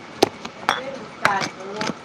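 Four sharp clinks about half a second apart, with brief snatches of a voice between them.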